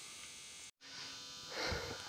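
Low steady electrical hum and buzz, cut off by a brief dropout just under a second in, then resuming.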